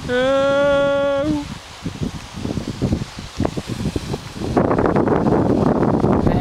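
A steady, horn-like pitched tone lasting about a second at the start, ending with a short upward blip; then rustling and handling noise, and from about four and a half seconds wind buffeting the microphone.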